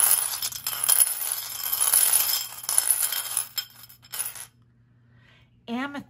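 Small tumbled crystals rattling and clinking against each other inside a glass bowl as it is shaken, for about four and a half seconds before stopping.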